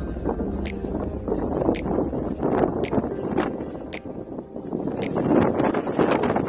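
Wind buffeting the microphone of a camera riding on a moving bicycle, a rough gusting rush, with a sharp tick about once a second.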